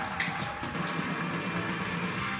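Band music with guitar playing for the show's break bumper, heard through a television's speaker, with one short click about a quarter of a second in.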